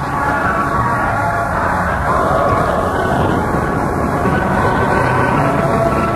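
Gospel church music from a 1975 radio broadcast recording: full, steady sustained chords, with a layer of hiss and static over the old recording.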